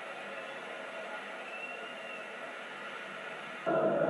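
Football stadium crowd cheering a goal, a steady roar on an old broadcast tape, with a sudden louder burst near the end.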